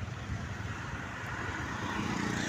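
Steady road-traffic and vehicle noise heard while riding a motor scooter through city streets, a low rumble that grows slightly louder toward the end.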